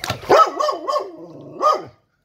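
American Staffordshire Terrier giving a high-pitched, yelping whine whose pitch wavers up and down several times, with a last louder yelp near the end. It is the sound of a frustrated, agitated dog whose toy has sunk in the water out of reach.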